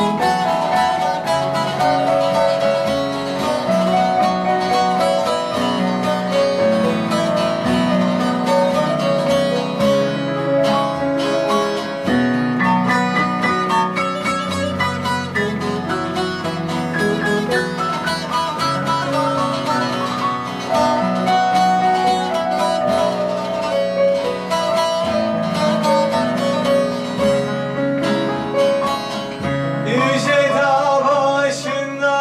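Bağlama and grand piano playing an instrumental passage of a Turkish folk tune (türkü) together: the long-necked saz plucks the melody over the piano's chords, with no singing.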